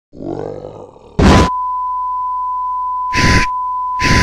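A cartoon dinosaur roar sound effect, then a loud burst of TV static hiss about a second in. It is followed by a steady high test-pattern tone, with another short burst of static near the end.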